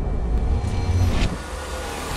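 Deep low rumble, the tail of a cinematic trailer boom, dropping away sharply about a second and a half in.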